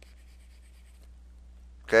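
Faint scratching of a stylus on a tablet as an underline is drawn in the first second, over a steady low hum.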